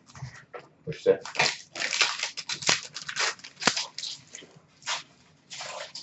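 Hockey trading cards and their pack wrappers being handled and sorted: a run of short, irregular rustles, scrapes and crackles.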